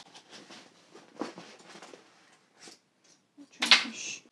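Soft, irregular rustling and small knocks of hands rummaging through a fabric tote bag, with one short, louder rustle near the end.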